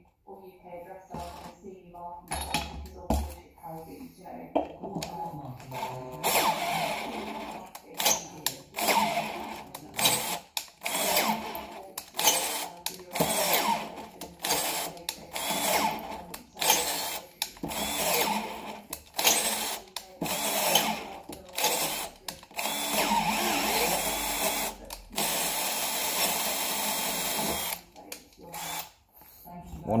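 Brushed Makita BHP453 18 V combi drill on slow speed driving an M12 spiral-flute machine tap into 12 mm steel plate. It starts quieter, then runs in many short stop-start bursts with one longer steady run near the end, cutting a full thread in a hole that the Milwaukee drill could not.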